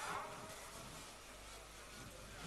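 Faint steady background hiss with a low hum in a gap between speech, with no distinct event.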